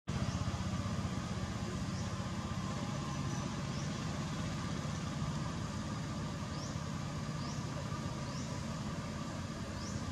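Steady low rumble of a running engine, even in level throughout, with faint short rising chirps high above it recurring about once a second.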